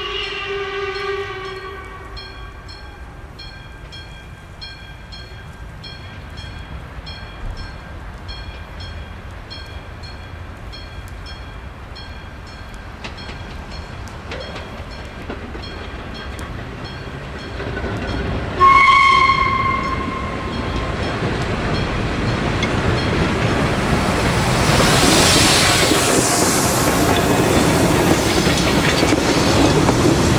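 Steam locomotive whistle blown briefly at the start and again, louder, about two-thirds of the way through, over steady repeated high pips from a level-crossing warning signal. Toward the end the train's rumble and wheel clatter rise as the locomotive and its coaches pass close by.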